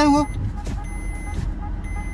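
Low, steady rumble of a car's interior while driving: engine and road noise heard from inside the cabin, in a short gap in the talk.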